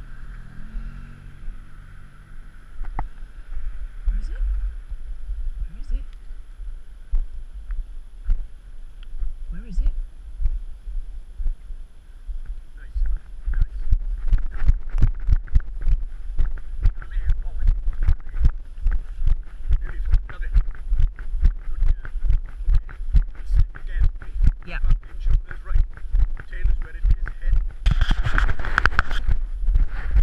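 Walking sounds from a body-worn camera: a steady rumble of wind on the microphone, and a car engine running briefly near the start. From about halfway, a regular beat of footsteps comes in, about two a second, and a short loud rush of noise follows near the end.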